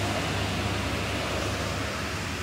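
Steady rushing background noise with a low hum underneath, even throughout.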